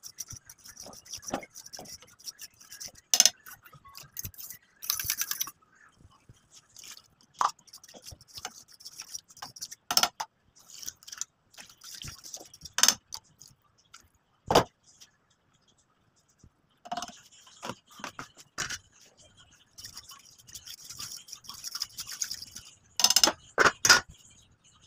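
A metal fork scraping and clicking against a metal pan as a masala is stirred, with stretches of frying sizzle. Near the end comes a quick burst of loud metallic knocks as a lid is set on the pan.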